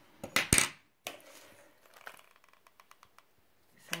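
Small metal scissors clinking and clattering against a hard tabletop: a burst of sharp knocks about half a second in, then faint handling ticks.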